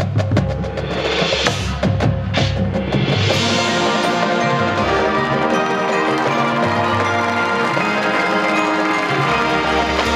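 High school marching band playing: a passage of percussion strikes and rolls for about the first three seconds, then the winds come in with full, sustained chords over the drums.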